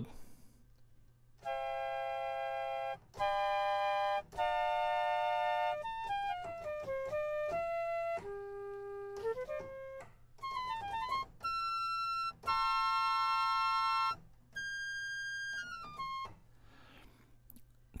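A flute sample looped in a software sampler, played from a MIDI keyboard: several held chords, then runs of single notes stepping down and up, and another held chord. The loop points are set at zero crossings, so the sustained notes loop smoothly without clicks.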